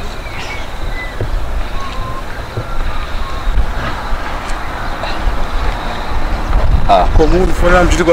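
Steady low outdoor rumble with a few faint short tones, then a voice starts speaking about seven seconds in.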